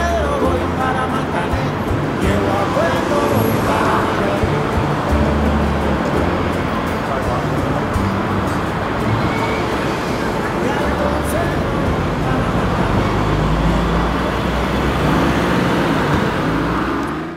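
Steady city street traffic noise, mixed with background music and indistinct voices.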